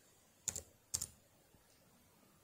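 Two keystrokes on a computer keyboard, about half a second apart, as a code is typed in.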